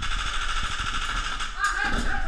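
Airsoft electric rifle firing a long full-auto burst, a rapid mechanical chatter lasting about a second and a half, followed by a voice shouting near the end.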